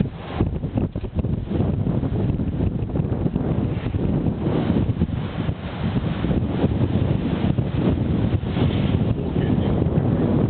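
Wind buffeting the camera's microphone: a loud, uneven low rumble that rises and falls with the gusts.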